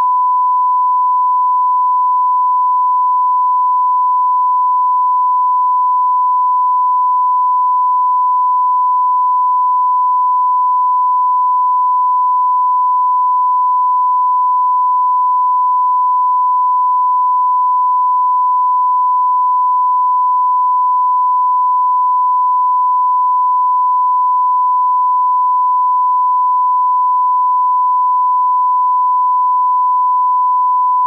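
Broadcast line-up test tone, the reference tone that accompanies colour bars: one steady, unbroken pure tone.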